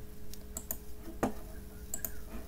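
A handful of sharp computer keyboard and mouse clicks, with one heavier knock a little past the middle, over a faint steady hum.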